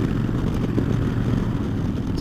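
2009 Harley-Davidson Dyna Fat Bob's V-twin engine running steadily at cruising speed through Vance & Hines Short Shots pipes, with wind rushing past. It holds an even low drone.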